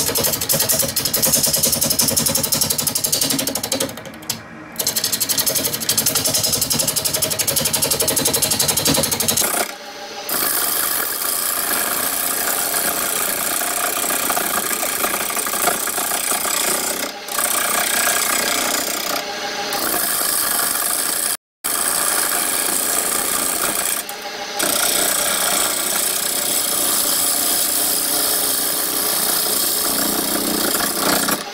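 A wood lathe spinning a dry bowl blank, believed to be carrot wood, while a hand-held turning tool cuts it, giving a continuous rough cutting noise. The cut stops for a moment several times as the tool is lifted from the wood.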